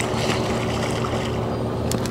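Boat motor running steadily, with a light wash of water noise.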